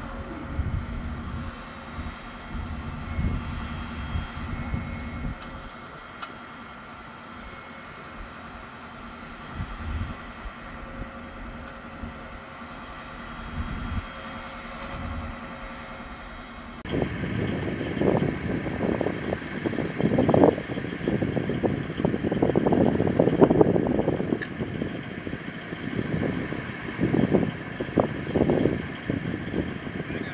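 M270 Multiple Launch Rocket System's tracked launcher with its diesel engine running, a steady hum with low rumbles. About halfway through the sound turns abruptly louder and rougher, with uneven surges over a steady hiss.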